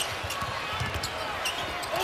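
Basketball dribbled on a hardwood court, bouncing several times in the first second or so, over the steady murmur of an arena crowd.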